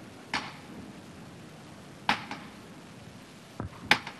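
A few scattered sharp knocks over quiet background noise, the loudest just before the end.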